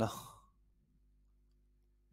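A man's voice trailing off at the end of a phrase into an exhaled breath, fading out within about half a second. Then near silence, with only a faint steady low hum.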